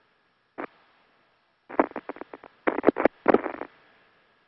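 Crackling bursts of radio static on a space-to-ground communications loop. A single click comes about half a second in, then two quick clusters of crackles in the second half, over a faint steady hiss with a thin tone.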